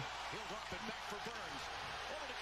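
Faint voice of a hockey play-by-play commentator from a game broadcast, over a steady low hum and hiss.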